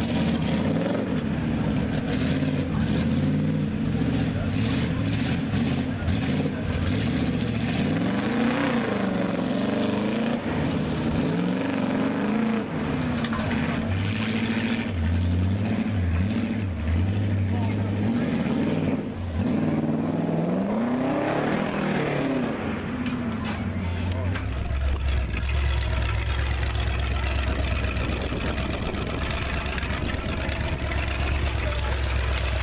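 Engine of a lifted mud-bog truck with a Corvette body, revving up and down again and again as it drives through the mud. About 24 seconds in this gives way to a steady, low engine idle.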